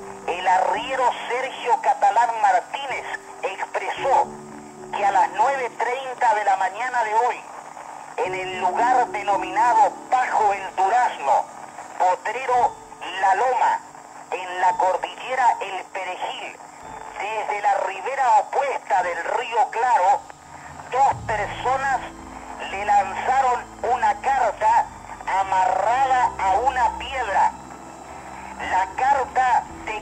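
A voice talking almost without pause, thin and narrow like a radio broadcast, over quiet background music; a deeper bass note joins the music about two-thirds of the way in.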